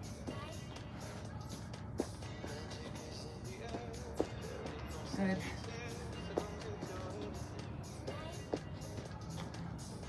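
Quiet background workout music with sneakers landing on a stone patio in brief thumps about every two seconds, the landings of jumping jacks done into squats.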